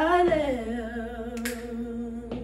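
Two girls singing unaccompanied gospel. About a third of a second in, the melody slides down and settles on a long held note with a slight vibrato.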